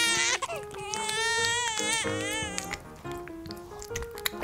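A crying voice sound effect, a wavering, child-like wail. One cry trails off just at the start and a longer one runs from about a second in to nearly three seconds, over light background music.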